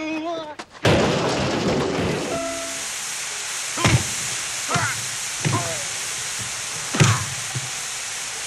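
A brief yell, then from about a second in the steady hiss of showers running, broken by four blows with grunts as men fight under the spray.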